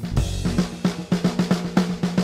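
Drum kit played in a fast, even run of strokes, about six or seven hits a second, starting about half a second in.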